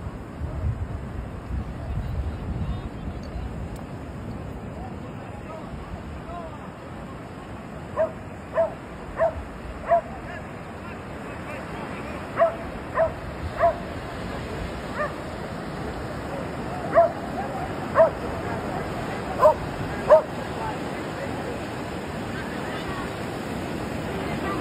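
A dog barking in short single barks, in little groups of two to four, starting about a third of the way in, over the steady noise of surf.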